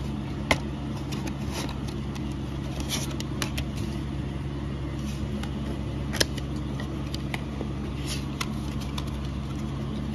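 Paper CD booklet and disc packaging handled by hand, giving scattered light clicks and rustles, the sharpest about half a second in and about six seconds in, over a steady low hum.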